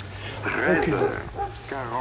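Indistinct speech not picked up by the transcript, over a low steady hum.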